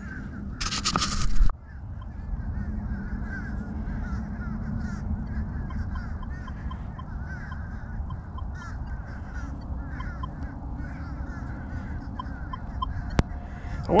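Geese honking in the background throughout, over a steady low rumble, with a loud burst of rustling noise about a second in. Faint runs of short, even beeps come from the Minelab Equinox 600 metal detector a few times.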